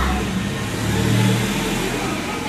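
A steady, low engine-like hum, slightly louder about a second in.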